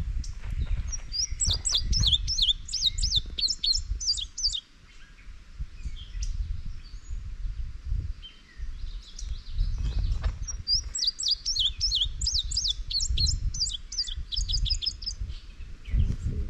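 A songbird singing in the treetops: two phrases of quick, high, sharply sliding notes, each about three seconds long and about ten seconds apart, over a low rumble.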